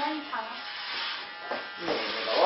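Electric hair clipper running with a steady buzz as it shears off a lock of long hair close to the scalp.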